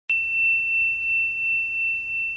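A single high-pitched electronic beep tone, starting just after the opening and held at one steady pitch.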